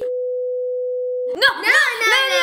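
A steady electronic bleep of a single mid pitch, lasting just over a second, that starts and stops abruptly with all other sound dropped out beneath it: an edited-in bleep over the speech. Children's voices and laughter follow right after it.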